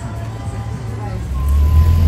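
Background music over faint street noise, giving way about halfway through to a loud low rumble of outdoor street noise.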